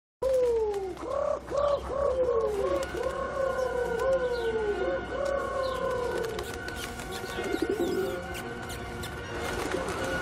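Feral pigeons cooing: a run of repeated falling coos that thins out after about six seconds.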